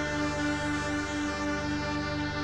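Electronic synthesizer drone from a modular rig: a dense chord of many steady tones held unchanged, the strongest of them pulsing quickly and evenly.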